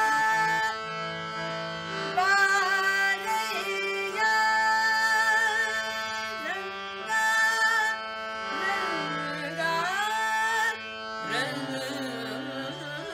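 A woman singing a Kannada devotional song (devaranama) in Carnatic style, with held notes and sliding ornaments, accompanied by a harmonium over the steady drone of an electronic shruti box.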